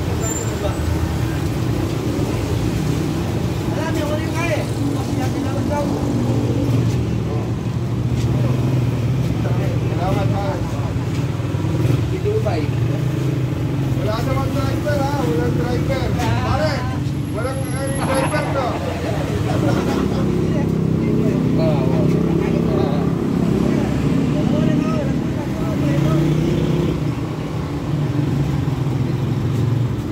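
Voices of several people talking, unclear and off-mic, over a steady low hum that runs without a break.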